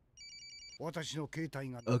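Cell phone ringing with a short electronic trill, a rapid on-off tone lasting about half a second, followed by a man speaking.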